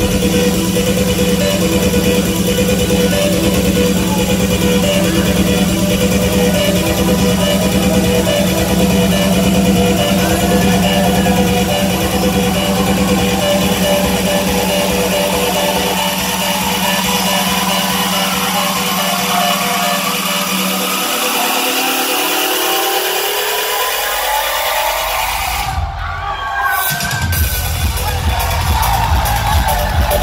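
Electronic dance music played loud over a club sound system during a live DJ set, in a build-up. The bass drops away while a rising sweep climbs in pitch, then there is a brief break, and the bass comes back in just before the end.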